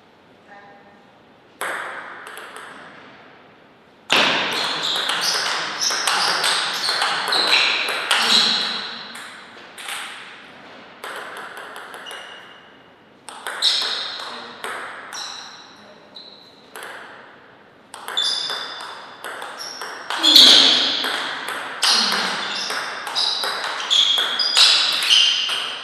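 Table tennis rallies: the ball clicking off the bats and the table in quick runs of sharp, ringing hits, three rallies with short pauses between points.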